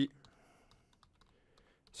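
Faint typing on a computer keyboard: a quick run of light keystrokes as a word is typed.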